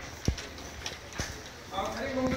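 A few sharp knocks and taps over room noise, with a voice beginning near the end.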